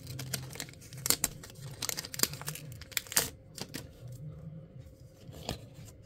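Foil wrapper of a Pokémon card booster pack crinkling and tearing as it is cut and pulled open, with irregular sharp crackles.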